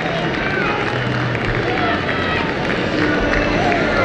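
Crowd at an outdoor football ground: a steady murmur of many voices with scattered calls and shouts from the stand.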